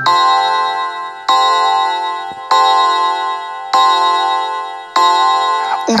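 A clock chime in a recorded children's song strikes five times, one bell-like tone about every 1.2 seconds, each ringing on and fading before the next.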